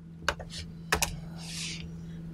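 A few short sharp clicks, in two close pairs about two thirds of a second apart, followed by a soft hiss like a breath, over a steady low electrical hum.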